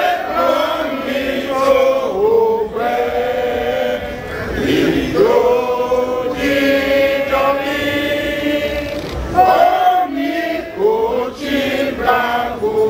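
A man chanting in long held, sliding notes, phrase after phrase with short breaks between them.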